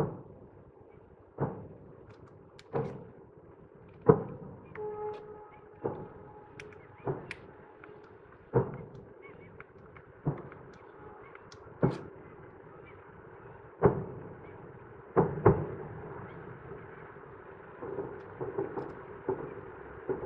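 Distant fireworks salute: about a dozen shell bursts, one every one to two seconds, each trailing off in a rolling echo. A quick run of smaller crackling bursts comes near the end.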